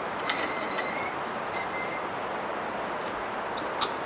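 A bear-bag cable's pulley and line squeak in short repeated bursts as a food bag is hoisted up, over a steady rushing of creek water. A sharp click comes near the end.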